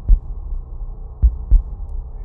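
Heartbeat sound effect: slow pairs of deep thumps, lub-dub, about one pair every second and a half, over a steady low hum.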